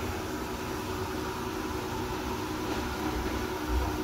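Electric motor driving a chakki flour mill, running steadily while the mill grinds wheat into atta: an even mechanical hum with a whir.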